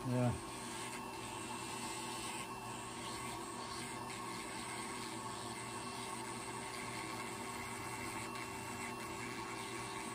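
Podiatric electric nail drill running steadily at a constant pitch, its burr grinding down a thickened, damaged toenail.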